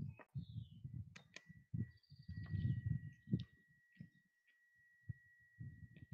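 Faint irregular low, muffled thumps and rustles picked up by a headset boom microphone close to the wearer's face, with a few small clicks. A thin steady high-pitched whine runs underneath from about a second in.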